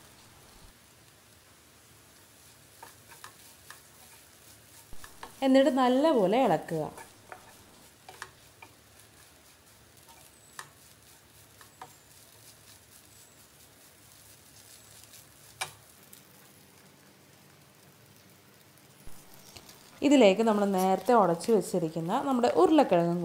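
Wooden spatula stirring and scraping crushed chicken and onion masala around a non-stick pan, faint, with scattered light ticks and a low frying sizzle. A voice breaks in briefly about six seconds in and again near the end.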